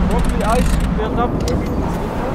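A vehicle engine running steadily at idle, a constant low rumble, with brief voices over it.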